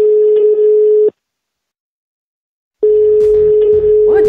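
Telephone ringback tone: a steady single-pitched beep that stops about a second in and, after a silence of nearly two seconds, sounds again near the end. It is the call ringing out at the other end, not yet answered.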